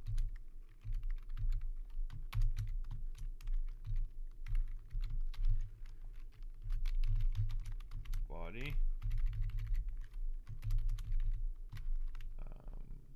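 Typing on a computer keyboard: irregular keystroke clicks throughout, over a steady low hum.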